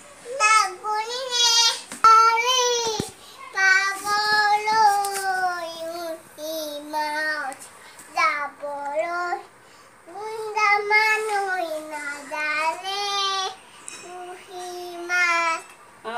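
A young child's voice singing a song unaccompanied, in a run of short held phrases with a wavering pitch and brief pauses between them.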